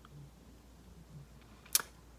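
Quiet room tone broken by one sharp click near the end.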